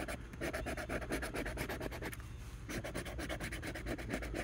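A coin scraping the latex coating off a scratch-off lottery ticket in rapid back-and-forth strokes, with a short pause a little past halfway.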